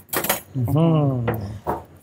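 A woman's voice, with a brief metallic jingle near the start, like a metal spoon clinking.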